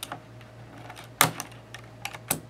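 Plastic keycap clicking as a wire keycap puller pries it up and pulls it off a mechanical keyboard switch. There is a light click at the start and a sharp, louder clack a little over a second in.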